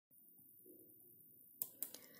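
Near silence, broken by two faint short clicks close together near the end.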